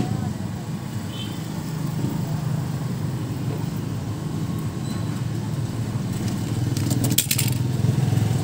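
Steady low hum of an engine running at idle, with a short burst of clicks about seven seconds in.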